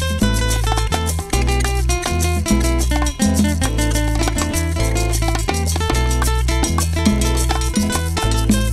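Instrumental passage of Cuban son music: a band playing a steady dance rhythm, with a prominent bass line moving every half second under pitched melodic notes and percussion.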